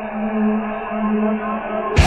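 Music: a muffled, lo-fi droning passage of sustained low tones, one held note swelling and dipping, with a loud electric-guitar rock section cutting in abruptly at the very end.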